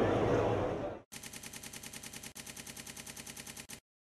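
Room ambience that cuts out about a second in. It is followed by an electronic end-card sound effect: a rapid, even stutter of short pulses, about ten a second, lasting nearly three seconds with a brief break in the middle, then stopping abruptly.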